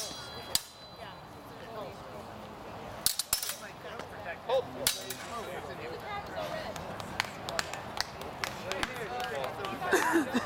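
Steel training swords clashing in a fencing bout: a sharp clash at the start, after which the blade rings briefly, then more sharp clashes about three and five seconds in and lighter clicks later on. Onlookers' voices murmur underneath.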